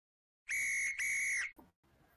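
A referee's whistle blown in two short, shrill blasts, one straight after the other, each about half a second long.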